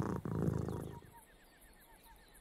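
A cat purring, a rapid low throbbing that fades out about a second in. It leaves faint, evenly repeated short chirps.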